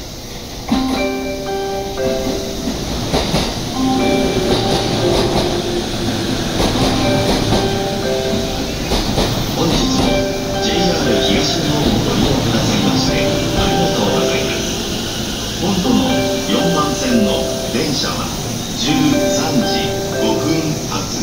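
A Chūō–Sōbu Line local electric train pulls into the platform, its wheels rolling and clattering over the rails as it slows. A melody of short, steady notes plays over it throughout.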